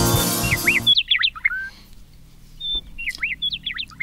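Intro music that cuts off suddenly about a second in, followed by a bird chirping in short bursts of quick rising and falling chirps, some with a brief high whistle.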